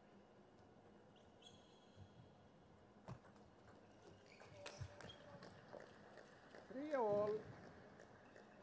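Table tennis rally: the ball knocks sharply off rubber and table a few times, a shoe squeaks briefly on the court floor, and near the end a player gives a short, loud shout as the point is won.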